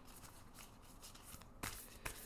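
A deck of tarot cards shuffled by hand, faint soft riffling and sliding of cards, with one sharper card slap near the end.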